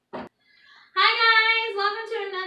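A woman's high voice singing out a long held note from about a second in, preceded by a single short click.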